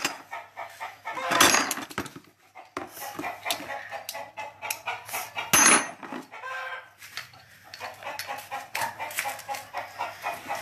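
Chickens clucking, mixed with rustling and knocks from a cloth and parts being handled close to the microphone. The loudest sounds are two short noisy bursts, about a second and a half in and just past the middle.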